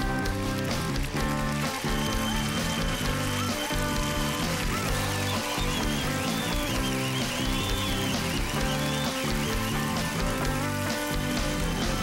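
Live band music with electric guitar over a steady, even beat; a high, wavering lead line runs through the middle stretch.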